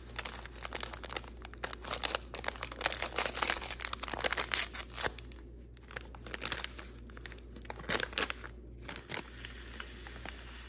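Paper instant-oatmeal packet torn open by hand: crackly tearing and crinkling of the paper, dense for the first few seconds and sparser after.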